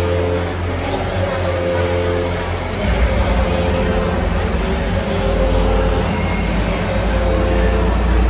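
Arena PA music with a heavy bass line, playing loud over the hum of the crowd. The bass gets heavier about three seconds in.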